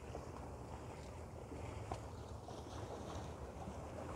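Wind buffeting the microphone in a steady low rumble, over gentle sea water lapping at a rocky shore with a few faint small splashes.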